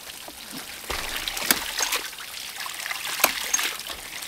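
A 1-inch hydraulic ram pump running: water rushes and spurts from the waste valve, which shuts with a sharp clack about every second and three-quarters. Its pressure tank has just been recharged with air.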